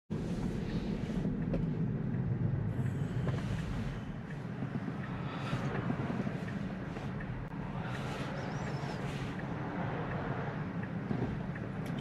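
Cabin noise inside a Tesla electric car moving slowly: a steady low road and tyre rumble with no engine note, a little louder in the first few seconds.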